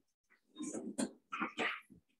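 A few short, indistinct bursts of a person's voice, faint and in quick succession, with a sharp click among them about halfway through.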